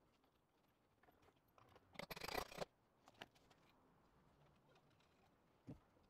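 Mostly near silence broken by brief metal handling noises as a stainless steel bolt and washer are fitted through thick aluminium angle: a short scrape and rattle about two seconds in, a single click a second later, and a soft thump near the end.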